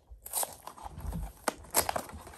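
Packaging, a toothpaste tube and its box, handled close to the microphone: irregular rustling and crinkling, with a sharp click about half a second in and two more near the end.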